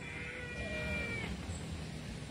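A faint animal call, held for about a second and steady in pitch, then fading out.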